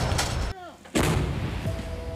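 Towed artillery gun firing: the long rolling tail of one shot dies away, then a second sharp blast comes about a second in and rumbles on as it fades.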